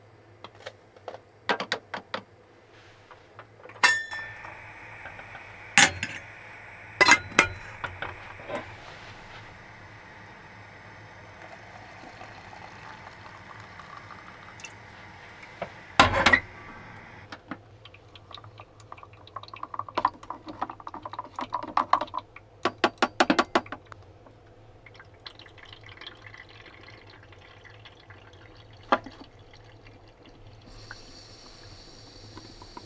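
Hand coffee-making: sharp clinks and knocks of cups and kitchenware, a steady hiss for about a dozen seconds, then water from a kettle poured into an AeroPress in a few short splashes.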